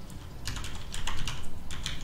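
Typing on a computer keyboard: a quick run of keystrokes, starting about half a second in, as a word is typed out letter by letter.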